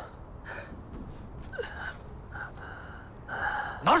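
A man panting hard, about five or six heavy open-mouthed breaths in and out, out of breath from exertion. A shouted word starts right at the end.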